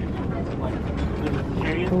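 A shopping cart rolling along, a steady low rumble with light rattling.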